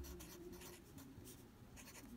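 Faint handwriting: a pen scratching out several short strokes as words are written.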